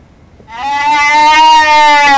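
A trapped deer giving one long, loud bleat, a distress call, starting about half a second in.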